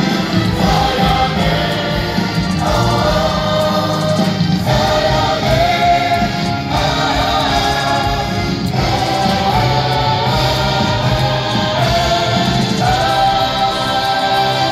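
A choir singing slow, held chords with musical backing, the harmony moving to a new chord about every two seconds.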